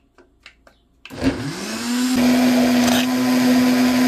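Countertop blender: a few light clicks of its control buttons, then about a second in the motor starts. It spins up quickly to a steady high speed and runs on evenly, blending a thick smoothie of spinach and frozen fruit.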